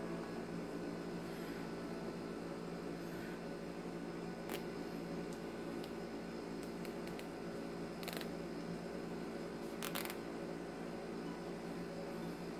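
Steady low background hum with a few faint clicks and rustles from handling a vinyl doll head and cloth body, the clearest about four, eight and ten seconds in.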